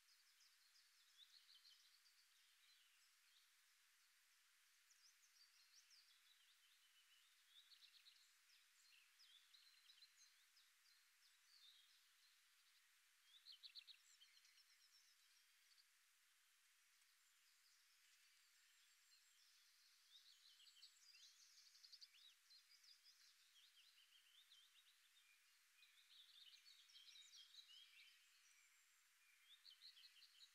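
Near silence with faint outdoor birdsong: many short, thin chirps come in scattered clusters over a soft hiss, the clearest about halfway through.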